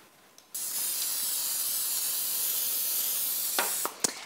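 Aerosol can of PAM nonstick cooking spray hissing in one continuous spray onto a baking sheet, about three seconds long, starting and stopping abruptly.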